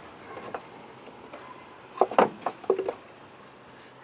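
Wooden beehive frame knocking and scraping against the wooden hive box as it is pried loose and lifted out, with a few faint clicks first and then a short cluster of knocks and scrapes about two to three seconds in.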